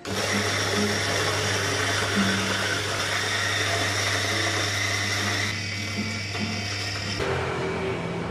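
Electric coffee grinder grinding beans into a stainless dosing cup, a steady motor hum with a grinding rasp. It starts suddenly, changes in tone about five and a half seconds in, and stops about seven seconds in.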